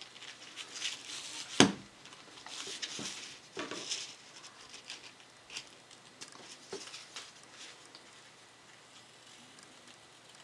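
Soft rustling of a paper napkin and small clicks and taps of scissors being handled on a tabletop, with one sharp click about one and a half seconds in and brief scrapes of rustling between two and four seconds.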